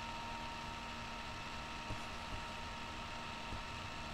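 Steady background hiss with a faint constant electrical whine of several high steady tones, typical of a low-quality computer or webcam microphone picking up its own noise. There is one faint soft knock about two seconds in.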